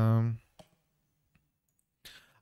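A man's voice holds one vowel for the first half second, then near silence broken by two faint computer-mouse clicks, the first about half a second in and a fainter one under a second later.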